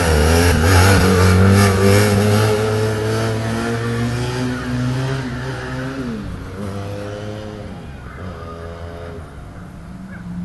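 Motorcycle engine revving hard through a wheelie and pulling away. Its pitch rises and falls several times and the sound fades steadily as it gets farther off.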